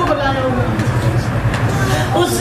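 A woman speaking into a microphone over a steady low hum.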